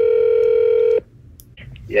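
Telephone ringback tone heard over the calling line: one steady ring tone that cuts off about a second in, the call still ringing unanswered at the other end.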